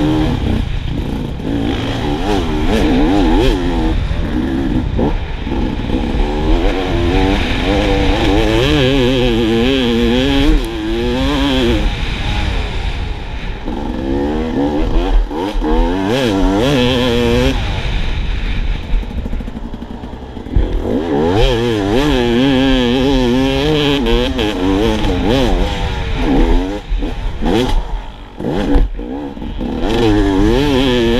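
Husqvarna TE 300 two-stroke enduro motorcycle ridden hard, heard from the rider's helmet, its engine revving up and dropping back again and again through the turns. Clattering knocks from the bike over the rough dirt track run through it.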